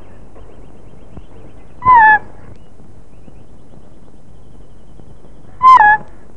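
A bird calls twice, about two seconds in and again near the end: each call is a single short, loud, slightly falling note.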